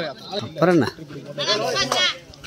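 Voices shouting at the volleyball court: two strained calls, the first a short falling shout about half a second in, the second a longer one near the end.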